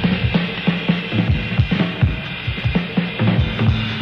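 Live jazz combo with the drum kit to the fore: a busy run of quick snare and bass-drum strokes, several a second, over the band.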